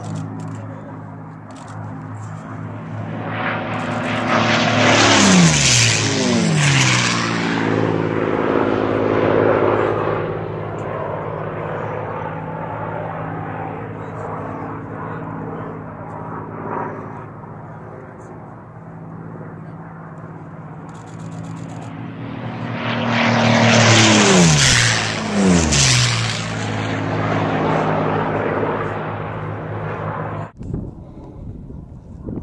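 Two racing aircraft passing low and fast, one about five seconds in and one about twenty-four seconds in. Each engine note drops steeply in pitch as the plane goes by, and a steadier engine drone carries on in between.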